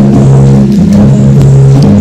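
Loud, steady low drone of held tones that runs without a break.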